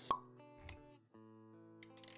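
Animated-intro sound effects: a sharp pop just after the start, then a soft low thud about two-thirds of a second in, over quiet sustained music notes.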